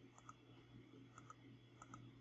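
Faint computer mouse clicks, three of them, each a quick press-and-release pair: one just after the start, one about a second later, one near the end, over a low steady hum.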